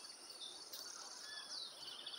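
Faint outdoor ambience: a steady high insect buzz with a few faint, short bird chirps.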